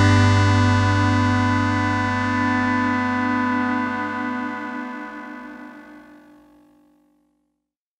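The last chord of a lo-fi indie rock song, held and ringing as it slowly fades out. It dies away to silence a little under seven seconds in.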